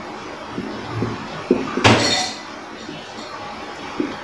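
Whiteboard marker writing on a board: faint strokes and small taps, with one sharp click a little under two seconds in.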